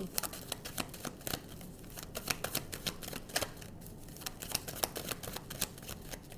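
A deck of tarot cards being shuffled by hand: a dense, irregular run of light clicks and flicks of card edges.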